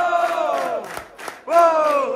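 Football crowd chanting in unison: a long held note that falls away under a second in, then a new one rises about a second and a half in, over sharp claps about four a second.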